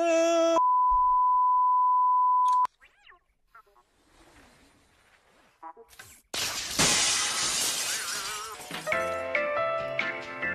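A man's brief exclamation is cut off by a steady, loud TV test-pattern beep that lasts about two seconds and stops suddenly. After a near-quiet gap, a loud crash like breaking glass comes about six seconds in and fades, and light music starts near the end.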